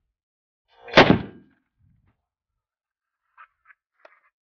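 A single shot from a .460 S&W Magnum rifle (a Thompson/Center Encore with a 20-inch Katahdin barrel) about a second in: one sharp report with a short fading tail.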